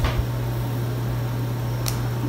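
A steady low hum, with a short click at the start and another near the end.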